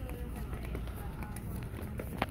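Shopping cart rolling along a hard store floor: a steady low rumble from the wheels.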